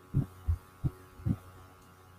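Four soft, low thumps, irregularly spaced, over a faint steady electrical hum.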